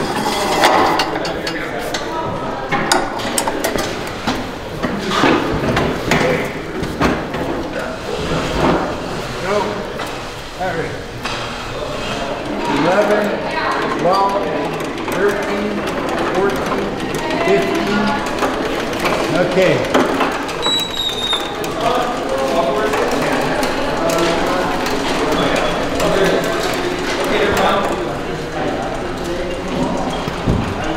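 Indistinct chatter of several people in a large, echoing hall, with scattered metallic clinks and knocks.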